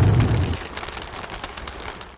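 The tail of an explosion sound effect: a low rumble that drops away about half a second in, leaving a dense, fading fire crackle.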